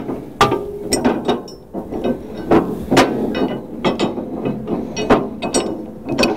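Steel three-point hitch upper link being fitted and adjusted between a skid steer adapter and a finish mower: an irregular string of sharp metal clicks and clanks, about two a second.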